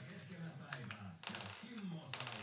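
Light clicking and tapping of small wooden and metal parts as a hand sets a thin plywood slat and screws on the board, in two short clusters.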